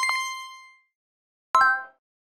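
Audio logo sting: a bright bell-like ding that rings out and fades over most of a second, then a shorter metallic chime about a second and a half in.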